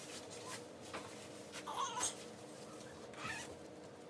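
Faint rustling and scraping of clothing as pants and boots are pulled on, with two louder brief scrapes about two seconds in and just after three seconds.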